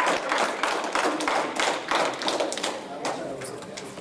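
Spectators clapping and calling out, the applause thinning and dying away over a few seconds.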